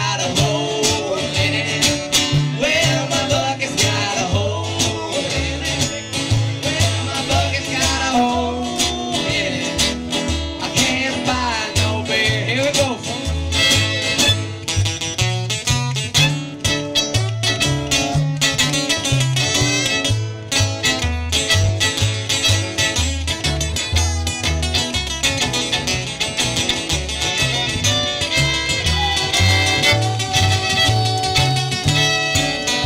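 Live band playing an up-tempo number: guitars over a bass line that moves note to note, with a steady beat.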